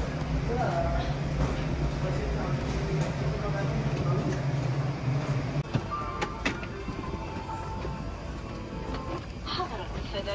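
Background voices and music over a steady low hum; the hum cuts off suddenly about six seconds in.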